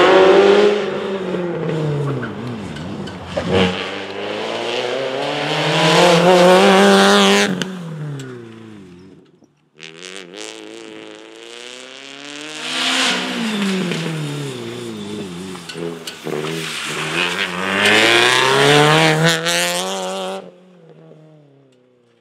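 Citroen Saxo rally car's engine revving hard through the gears on a special stage, its pitch climbing and falling again and again with each gear change and lift off the throttle. There is a short break just before halfway, and the engine fades away near the end.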